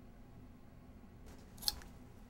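Low steady room hum, broken near the end by a brief rustle and one sharp click.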